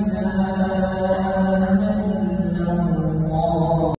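Muezzin's voice calling the adhan over the mosque's loudspeakers, one long drawn-out melodic note that steps a little lower about two and a half seconds in, cut off abruptly at the end.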